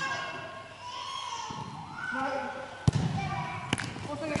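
A futsal ball kicked on the court: a sharp thump about three seconds in, then a lighter knock shortly after, over players' shouting.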